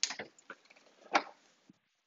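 Oven door being opened: a click right at the start, a few light knocks, then a single clunk a little over a second in.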